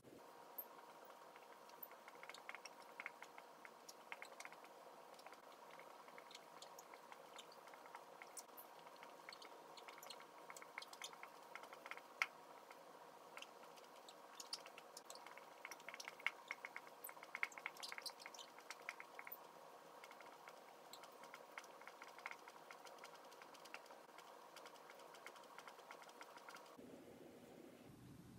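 Near silence: faint scattered ticks and scratches of a marker writing on a whiteboard, busiest in the middle, over a low steady hum that stops about a second before the end.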